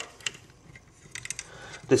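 Small clicks of a crimp holder being fitted into the slotted fixture of a digital crimp pull tester: a single click just after the start, then a quick run of clicks a second in.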